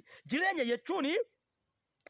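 A man speaks for about a second. In the pause that follows, a cricket chirps faintly in two short high-pitched runs.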